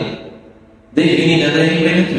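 A man's voice in a drawn-out, chant-like intonation: the end of one held phrase, then a second held phrase starting about a second in.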